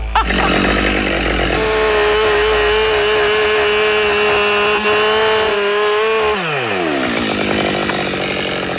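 Husqvarna 572XP two-stroke chainsaw held at full throttle, cutting through a log with a steady high-pitched engine whine. About six seconds in the throttle is released and the engine pitch drops quickly toward idle.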